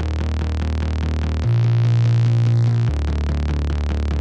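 Electronic dance music made with software synthesizers: a sustained synth bass that changes note twice, under a quick repeating synth pluck melody with chords, about six notes a second.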